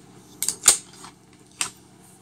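Three sharp metal clicks from a SIG P229 pistol and its 9 mm magazine being handled, the second click the loudest.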